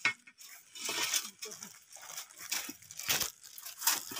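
Dry bamboo leaves and twigs crackling and rustling irregularly, with a few sharp snaps and clicks, as they are disturbed by hand, stick and feet.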